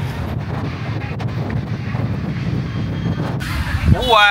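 Steady low rumble of wind buffeting the microphone, covering faint market background noise, with the higher sounds muffled until shortly before the end.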